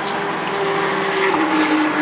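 A car running at speed on the racing circuit, its engine note stepping down in pitch a little past halfway, as on an upshift, and growing slightly louder.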